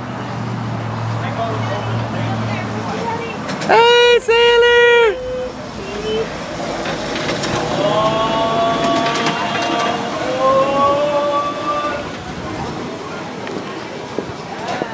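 Two short, loud horn toots on one steady note, back to back, about four seconds in.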